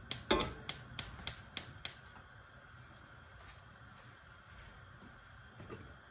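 Gas hob's spark igniter clicking rapidly, about three clicks a second, as the burner is lit; the clicking stops about two seconds in.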